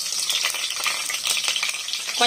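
Slit green chillies sizzling and crackling in hot oil in a nonstick pot, the sizzle starting suddenly as they hit the oil.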